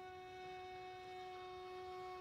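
A violin holding one long, quiet note at an unchanging pitch, with no vibrato.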